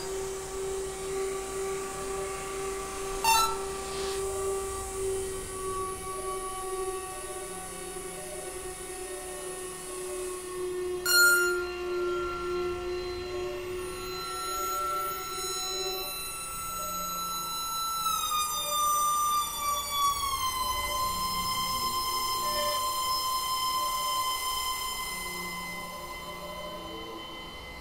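Electronic drone music from synthesizer gear: overlapping sustained tones. A bright, many-layered tone comes in about eleven seconds in and slides down in pitch a few seconds later, with a brief crackle of clicks near the start.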